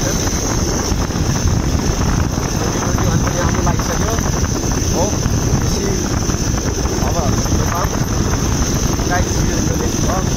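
Steady wind rushing over the microphone of a moving motorcycle, with the bike's engine and tyre noise underneath at road speed.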